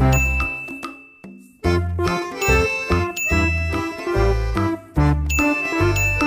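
Background music: chiming bell-like tones over a repeating bass line, with a short break about a second and a half in.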